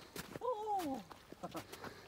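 Footsteps crunching on packed snow, a series of short sharp steps, with a person's drawn-out exclamation sliding down in pitch about half a second in.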